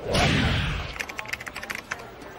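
Sound effects of an animated intro: a loud whoosh at the start that fades out within about a second, then a quick run of computer-keyboard typing clicks as a caption types itself out.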